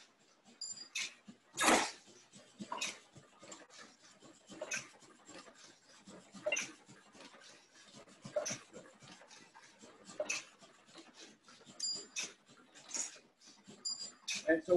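Clamshell platen press, a foil press set up for die cutting, running and perforating and punching paper sheets. Each closing of the platen gives a sharp clack about every two seconds, the loudest about two seconds in.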